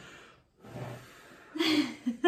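People blowing out birthday cake candles: two short breathy puffs of air, about half a second and a second and a half in, the second with a brief voiced exhale.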